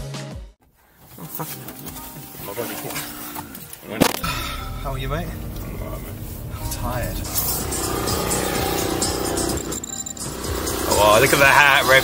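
A music track cuts out in the first half-second. After a brief near-silence comes the sound inside a moving car: a steady low engine and road rumble, with people's voices over it that grow louder near the end.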